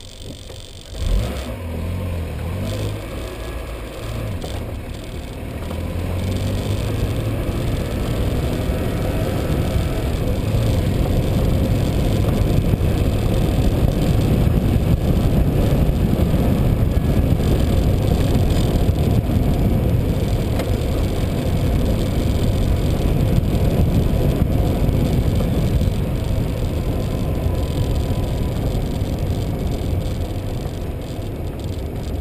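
Rumbling road and wind noise from a vehicle rolling over cracked asphalt. It starts suddenly about a second in, grows louder over the next several seconds as it gathers speed, then holds steady.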